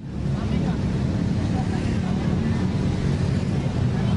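Steady low rumble of road traffic on a city street.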